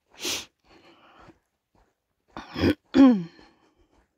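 A woman sneezing about two and a half seconds in: a breathy burst, then a louder voiced 'choo' falling in pitch. A short breathy noise comes at the very start.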